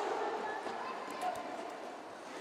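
Faint hall ambience of quad roller skates rolling and clattering on a wooden sports court as a roller derby pack engages, slowly fading.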